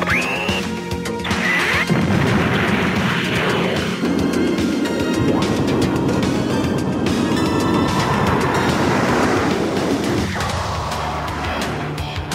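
Cartoon action soundtrack: background music with a loud rushing, crashing sound effect from about two seconds in to about ten seconds in, with a quick rising sweep near the start.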